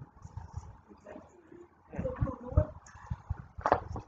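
Handling noise on a handheld microphone: scattered low knocks and rubs, thickest about two seconds in, with a sip of coffee from a paper cup and one sharper knock near the end.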